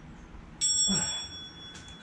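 A single bell-like ding about half a second in, ringing on and fading away over about a second and a half: the workout interval timer signalling the end of the set.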